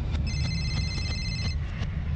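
A telephone ringing: one rapidly trilling ring lasting about a second, over a low rumble in the soundtrack.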